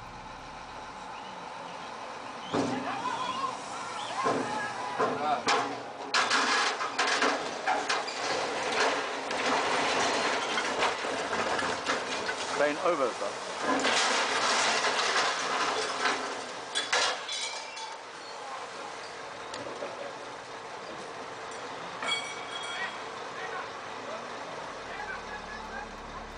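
Bystanders shouting and crying out as a truck-mounted crane tips backwards and drops the boat it is holding into the water. There is clatter and splashing, starting suddenly about two and a half seconds in and busiest for about fifteen seconds, then dying down.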